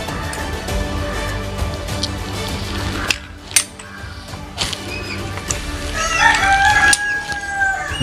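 A rooster crowing once in the last two seconds, one long call that falls slightly at its end. Under it are faint background music and a few sharp clicks.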